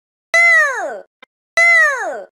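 A cartoon sound effect: a high, squeaky, voice-like call that slides down in pitch, played twice in identical form, each lasting under a second, with a faint click between them.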